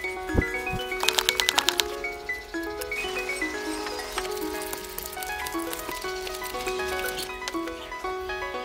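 Gentle instrumental background music, a melody of short, stepped notes over a held low note. About half a second in there is a dull thump, and around a second and a half in a quick rattle of about a dozen sharp clicks.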